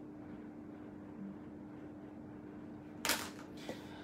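Quiet room tone with a faint steady hum, broken about three seconds in by one short, sharp noise and a fainter click just after it.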